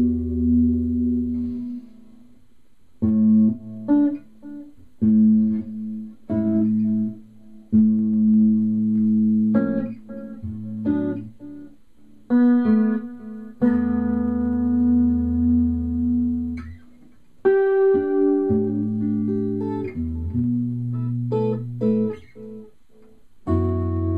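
Solo hollow-body electric guitar playing a slow improvisation: ringing chords and single notes let sustain, in short phrases broken by brief pauses.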